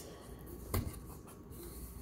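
Fingers picking and scraping at the sealed top flap of a new cardboard cornstarch box, struggling to get it open: quiet scratching with one small click about three-quarters of a second in.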